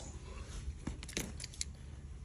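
A few faint clicks and taps, about a second in, from a die-cast toy car being handled and lifted off a plastic drag track, over a low steady hum.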